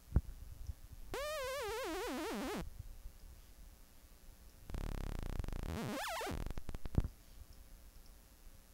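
Xfer Serum software synthesizer playing two sawtooth notes. The first wobbles up and down in pitch and drifts downward for about a second and a half. After a pause comes a harsher buzzing note whose pitch dips near its end, and a sharp click follows.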